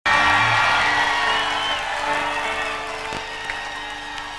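A live rock band's held chord ringing out and slowly fading, with a crowd cheering beneath it.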